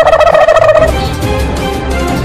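A high-pitched, rapidly pulsing laugh for about the first second, then background music with a steady low beat takes over.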